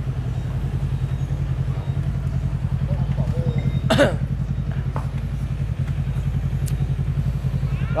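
A motorcycle engine idling steadily close by, a rapid even pulse that never rises or falls. A brief voice is heard about four seconds in.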